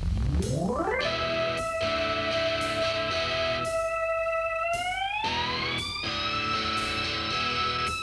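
Instrumental rock intro led by an electric guitar holding one long sustained note over a band backing. The note slides up at the start, holds, and climbs again about five seconds in.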